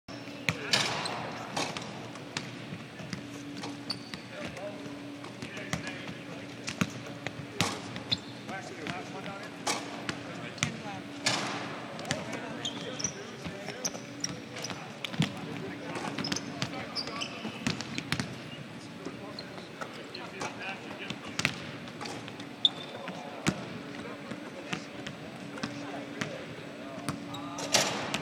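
Several basketballs bouncing and dribbling on a gym court during a team shooting practice, giving irregular, overlapping thuds. Voices talk in the background, and a steady low hum runs underneath.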